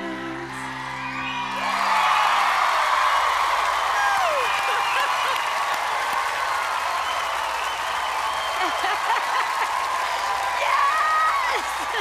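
Sustained musical notes end about two seconds in and give way to an audience cheering and applauding, with shouts and whoops rising above the clapping.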